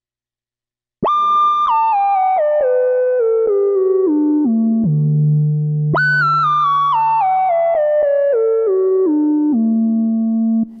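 Korg Prologue analog synthesizer's filter self-oscillating as a monophonic lead, with portamento and reverb. It starts about a second in and plays a run of notes stepping downward, each sliding into the next. About six seconds in it jumps back up high and steps down again.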